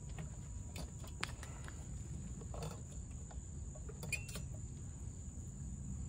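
Scattered light clicks and taps of a Honda Goldwing GL1500 headlight's plastic housing and bulb socket being handled while the halogen bulb is worked out. Behind them, a steady high trill of crickets.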